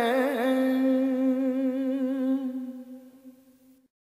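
A man's unaccompanied voice, reciting a Sufi devotional kalam, holds the closing note. It wavers briefly just after the start, then sustains a steady note that fades away and stops just before the end.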